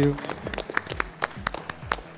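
Light, scattered applause: separate hand claps from a few people at an uneven pace, following a spoken "thank you".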